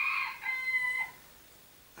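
A rooster crowing once, a single drawn-out crow that ends about a second in.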